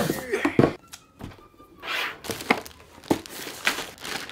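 Cardboard boxes and packaging being handled: several short knocks and thunks of boxes being lifted and set down, with rustling and crinkling of packaging between them.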